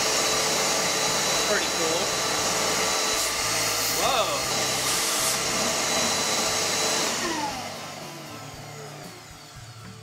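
Shop vac running, pulling air through a cyclone dust separator and its hoses: a steady rush of air with a thin high whine over it. It is switched off about seven seconds in and the sound dies away.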